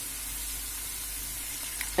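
Prawn heads, carrot and leek frying in oil in a pan, sizzling steadily.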